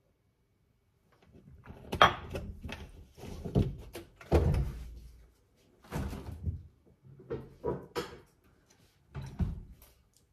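A tall kitchen unit door being opened and shut, with a run of separate knocks and thuds as things are handled and set down. The sharpest knock comes about two seconds in.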